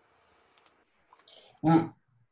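A few faint, sharp computer mouse clicks in the first half, with a short spoken syllable near the end.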